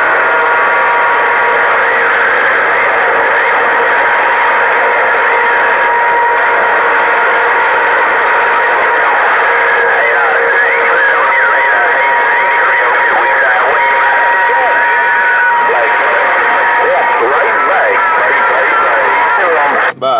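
HR2510 radio's speaker receiving on 27.085 MHz: a steady loud hiss of band noise with several whistling carrier tones and garbled, overlapping voices of other stations. One whistle holds until near the end while others drop out partway.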